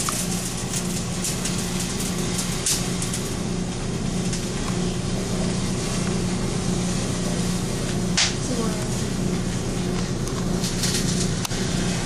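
Sugar, sulfuric acid and potassium chlorate burning violently in a frying pan: a steady, loud sizzle like food frying, with a few sharp cracks. A steady low hum runs underneath.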